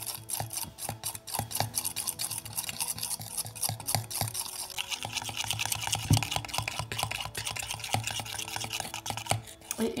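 Mini stainless-steel whisk beaten vigorously in a stainless-steel bowl, its wires rapidly clicking and scraping against the metal. The shea butter balm being mixed has begun to set at the edges after chilling.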